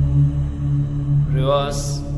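Background meditation music: a steady low drone, with a short rising chanted voice about a second and a half in that ends in a brief swish.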